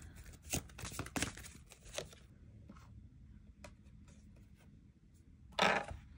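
Oracle cards being handled: a few light clicks and taps in the first two seconds, then a short rustle near the end as another card is drawn.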